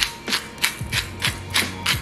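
Hand-twisted pepper mill grinding peppercorns, a steady run of short crunching clicks at about three a second.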